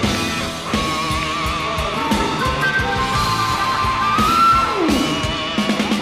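Live rock band playing: a held, wavering lead line over electric guitar, bass and drum kit.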